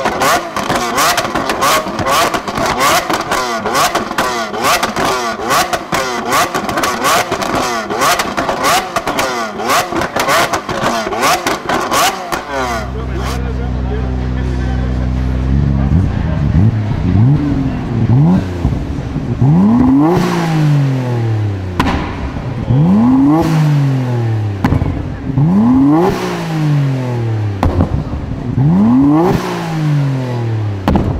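Lamborghini Aventador's V12 exhaust crackling with a rapid string of pops and bangs for the first twelve seconds or so. Then a Nissan Skyline R33 GT-R's twin-turbo straight-six idles briefly and is blipped repeatedly, about one rev every three seconds, each rising sharply and falling away.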